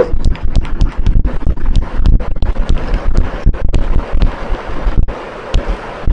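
Irregular quick taps and knocks with dull low thumps, the sound of someone writing by hand on a surface; they stop about five seconds in.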